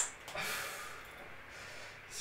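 A faint breath out, a soft sigh that fades away over about a second and a half.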